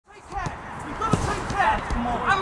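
Footballs being kicked on an artificial pitch, a few sharp thuds, amid short calls and shouts from players warming up.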